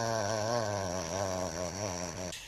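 A man's voice holding one long, wavering, chant-like note that gradually fades near the end.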